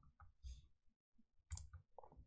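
Near silence broken by two faint clicks, the sharper one about a second and a half in: a computer mouse clicking.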